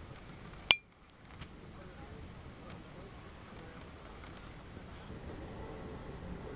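A single sharp click with a short metallic ring about a second in, followed by faint, steady background noise.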